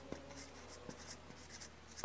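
Marker pen writing on a whiteboard: a run of faint, short strokes as letters are written.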